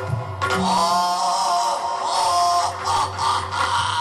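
Yakshagana accompaniment music: a steady drone under a wavering melodic line, with a few drum strokes.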